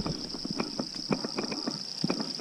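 Steady high-pitched chorus of insects, with a string of irregular light clicks and taps, several a second, over it.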